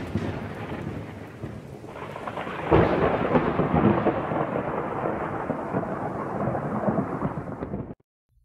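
Thunderstorm sound effect: rain with rolling thunder, a louder thunderclap about three seconds in, cutting off suddenly at the end.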